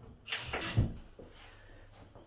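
A short knock and scrape about half a second in, from a cordless impact driver and its bit being pressed onto a spring-toggle screw in a plasterboard wall.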